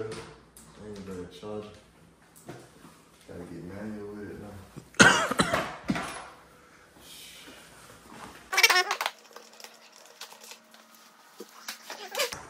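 Indistinct low speech in a small room, broken by two short, loud bursts of noise, about five seconds in and again about eight and a half seconds in.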